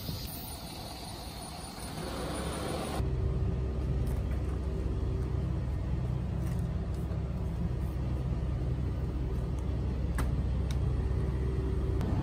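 Outdoor noise for about three seconds, then a sudden cut to the steady low machine hum of a convenience store's refrigerated drink coolers. Near the end there are a couple of faint clicks as a plastic bottle is handled.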